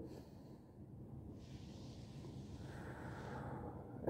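A person's slow breath in, faint and lasting about two seconds, beginning about a second and a half in.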